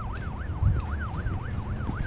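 Police car siren in its fast yelp, the pitch rising and falling about four to five times a second, over a low rumble.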